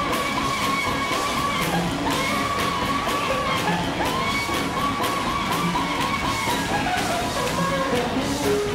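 Live sacred steel gospel music: a steel guitar plays a sliding, gliding melody over a steady drum beat, with a tambourine and a congregation clapping and shouting along.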